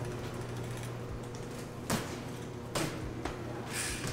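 BMX bike rolling along a hard floor, its freewheel ratchet ticking, over a steady low hum. Three sharper knocks come in the second half.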